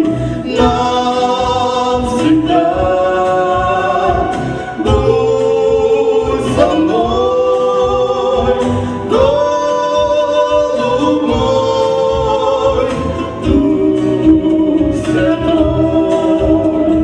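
A man and a woman singing a Christian song as a duet over musical accompaniment, holding long sustained notes above a steady low beat.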